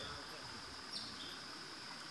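Insects droning steadily in a high, even pitch. About a second in comes one short high chirp that slides down in pitch, followed by a brief lower note.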